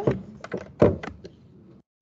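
A few knocks and thumps, the loudest about a second in, followed by a sudden cut to silence near the end.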